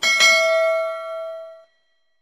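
Bell-ding sound effect, two quick strikes a fraction of a second apart, ringing on with a clear pitched tone that fades and cuts off after about a second and a half.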